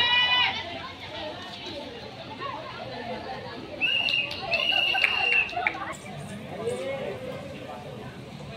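Young players and onlookers chattering and calling out, with a loud shout right at the start. About four seconds in comes a high, held call in two parts, lasting nearly two seconds.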